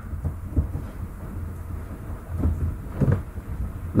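Low steady background rumble on the microphone, with a few faint soft knocks.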